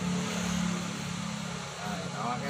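A motor engine running with a steady low hum that fades near the end.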